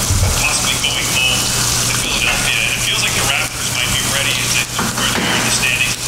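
Crinkling of a plastic food pouch as it is handled and cut open with scissors, over a steady low hum.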